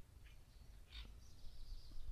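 A faint bird chirp about a second in, with a thin high bird call later, over a quiet rural background.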